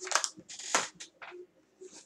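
A makeup wipe being pulled from its crinkly plastic packet: a few short rustling, crinkling bursts, the loudest within the first second, with another near the end.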